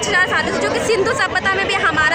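Speech only: a woman talking close to the microphone, with crowd chatter behind her.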